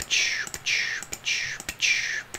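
A man whispering softly: four or five short, breathy, hissing syllables with no voiced tone.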